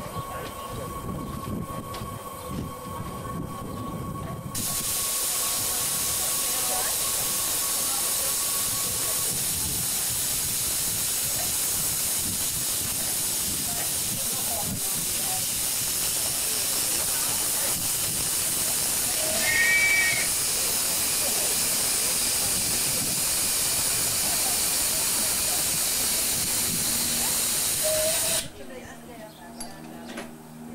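Miniature live-steam locomotive letting off steam: a loud, steady hiss that starts suddenly a few seconds in and cuts off suddenly near the end, with a short high peep about two-thirds of the way through.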